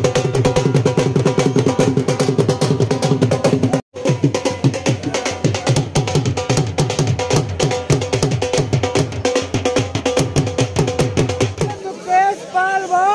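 Dhol beaten with a stick in a fast, steady rhythm, with a held tone running underneath. The sound cuts out briefly about four seconds in.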